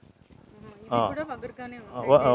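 A flying insect buzzing close to the microphone, a thin droning pitch that wavers up and down as it moves, starting about half a second in. A man's voice comes in over it.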